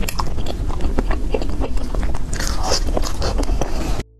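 Close-miked chewing and biting of food: a dense, irregular run of mouth clicks and smacks, thickest a little past halfway through.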